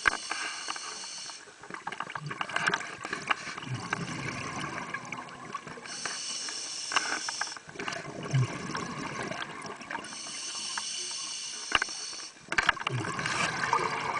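Scuba regulator breathing heard underwater: hissing inhalations through the demand valve alternating with bubbling exhalations, about three breaths in a steady rhythm.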